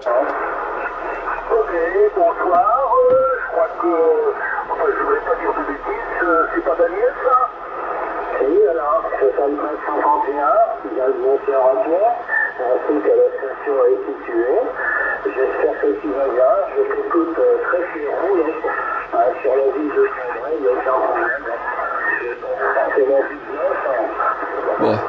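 Voices received on a Yaesu FT-450 transceiver on the 27 MHz CB band in upper sideband: continuous single-sideband radio speech, thin and cut off below and above the voice range.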